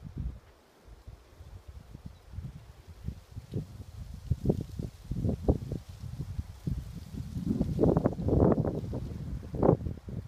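Footsteps on a sandy path, with wind buffeting the microphone. The sound is quieter at first and gets louder and busier in the last few seconds.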